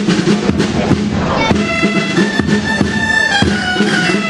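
A shawm-type reed instrument, the Valencian dolçaina, plays a dance tune over a rope-tensioned side drum (tabal) beating steadily. The reed melody comes in clearly about a second and a half in.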